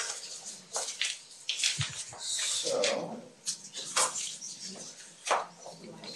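Paper certificates rustling and crinkling as they are sorted at a podium microphone, with scattered small crackles, a longer rustle a couple of seconds in, and a soft bump against the microphone.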